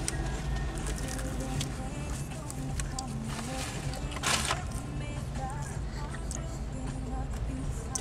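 Inside a car cabin: a steady low engine hum with faint music playing quietly under it, and a single short crunch-like burst about four seconds in.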